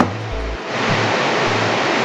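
A steady rushing hiss, even across the range like static or wind, that swells up under a second in and then holds level.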